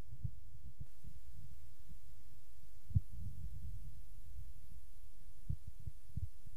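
Wind buffeting an outdoor microphone: a low, irregular rumble with soft thumps and one sharper thump about three seconds in.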